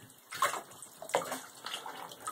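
Bathtub water splashing and sloshing as an otter thrashes while wrestling a rubber duck, in irregular splashes with two louder ones about half a second and just over a second in.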